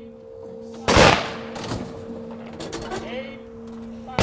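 Rifle volley from a veterans' honor guard firing party, one part of a ceremonial rifle salute: a single loud crack about a second in that rings out briefly.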